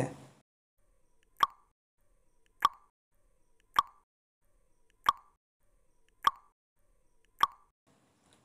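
Countdown timer sound effect: six short pops, about one every 1.2 seconds, each ringing briefly in a mid pitch, ticking off the seconds of the on-screen answer countdown.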